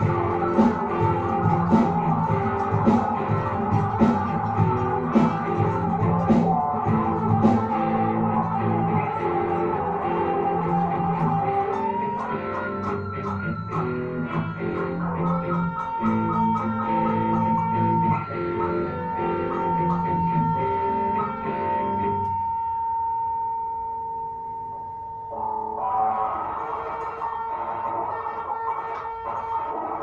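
Electric guitar played over a looped backing track, with a lead line and a long sustained high note in the second half. The sound thins out and dips for a few seconds near the end before the full playing comes back in.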